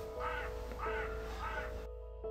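A crow cawing three times, short harsh calls about half a second apart, over soft background music.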